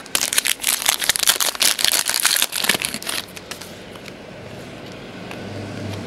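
A shiny foil 2009 Donruss Certified football card pack wrapper being torn open and crinkled. It makes a dense crackle for about three seconds, then dies down to a quiet steady hum.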